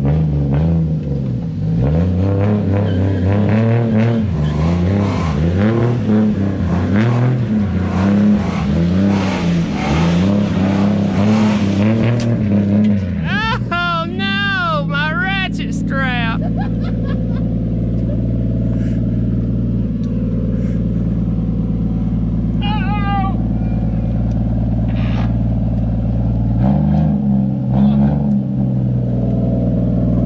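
A car engine revs repeatedly in rising and falling pulls while the car tows a stuck pickup truck off wet grass on a strap. A high wavering squeal follows about thirteen seconds in. The engine then idles steadily, with one brief rev near the end.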